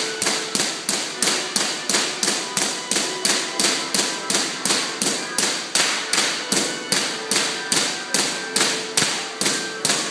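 Electric sparks from a two-story Van de Graaff generator cracking in a steady rhythm, about three snaps a second, each a sharp crack that dies away quickly.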